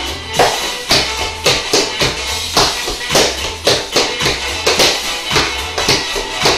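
Tap shoes striking a hardwood floor in a dance rhythm, sharp taps coming irregularly, some in quick runs, over recorded dance music with a steady bass line.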